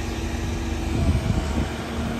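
Excavator diesel engine running steadily, a low rumble with a steady hum, swelling briefly about a second in.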